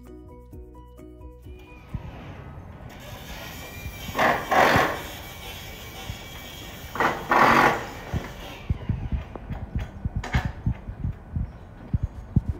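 Brief background music gives way to on-site work sound: two loud bursts of noise about four and seven seconds in, then a run of light knocks and taps as grated plastic deck panels are set onto an aluminum deck frame.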